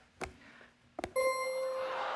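Game-show bell chime: a single clear ding held for most of a second, the cue revealing how many of the guesses are right, preceded by two short clicks, with studio audience noise rising beneath it.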